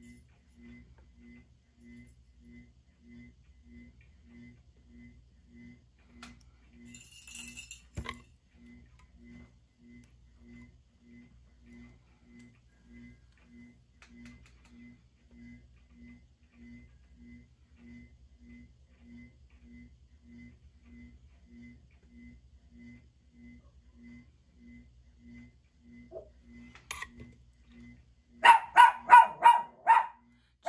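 Small cup-turner motor running with a faint, steady pulsing hum, a few pulses a second. A brief rattle and a sharp click come about seven seconds in. Near the end a dog barks several times, loudly.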